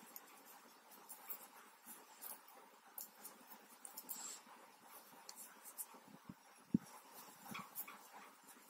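Faint clicking and light scraping of metal knitting needles as stitches are worked in wool yarn, with a soft low thump about three-quarters of the way through.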